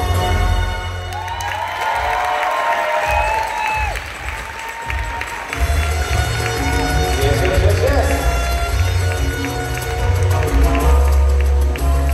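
Dance music with a heavy bass beat played over a hall sound system while an audience cheers, whoops and applauds. The bass drops out for a few seconds about two seconds in and comes back around the middle.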